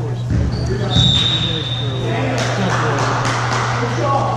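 Voices chattering in a gymnasium over a steady low hum, with a basketball bouncing on the hardwood floor. A thump sounds early on, and a steady high-pitched tone is held from about half a second to two seconds in.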